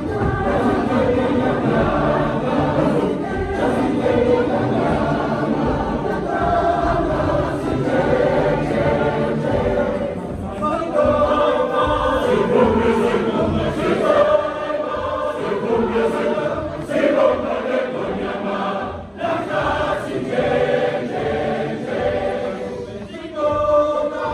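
Large mixed church choir of women and men singing together in full voice, many voices in harmony.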